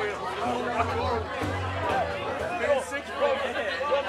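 Audience chatter and talk in a crowded tent between songs, with a low held note from an amplified instrument for about a second near the start.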